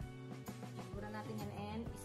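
Background music: held chords over a steady beat of about two strokes a second.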